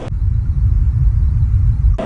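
A loud, deep bass rumble with almost nothing above it, cutting off suddenly near the end.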